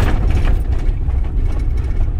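Campervan driving, heard from inside the cab: a steady low engine and road rumble, with a brief surge of louder road noise at the start.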